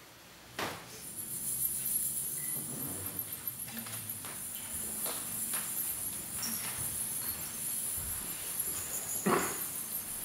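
A high, shimmering chime-like stage sound cue sets in about a second in and holds steady. Over it come scattered light taps and shuffles from performers moving on a wooden stage, after a single sharp knock at the start.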